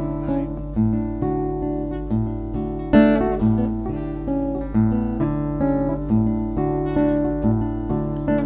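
Acoustic guitar playing alone, a slow repeating pattern of plucked notes struck at an even pace, with a low steady hum beneath.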